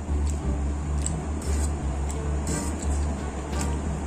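Background music with a heavy, steady bass line, with a few light clicks of a fork against the food tray.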